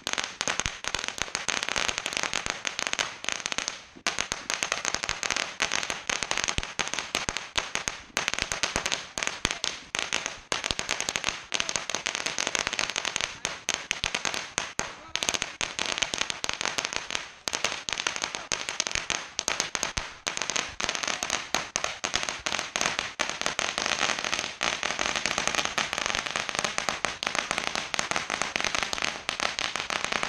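Firecrackers going off in a rapid, continuous crackle of sharp pops, with a few brief lulls.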